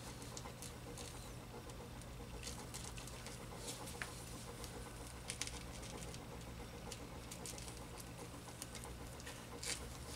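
Faint, scattered clicks and scrapes of a small screwdriver prying at the insides of an aluminium can-type electrolytic capacitor, over a steady low hum.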